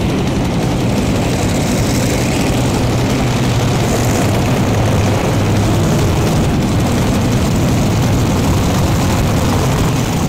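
Unlimited Modified pulling tractor running its engines at full throttle down the track during a pull, heard as a loud, steady, continuous engine noise.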